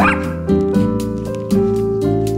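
A small dog gives one short, high-pitched yip right at the start, begging for a treat held above it. Background piano music plays throughout.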